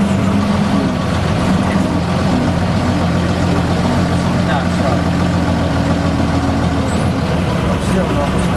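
Vintage bus engine running steadily, its low drone holding a pitch with a small shift a few seconds in.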